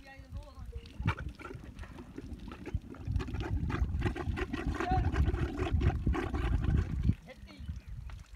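Male dromedary camel in rut gurgling and rumbling as it courts the females. The sound grows louder about three seconds in and drops away shortly before the end.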